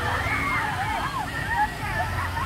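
Water rushing and sloshing along the concrete channel of a river-rapids raft ride, steady throughout, with people's voices over it.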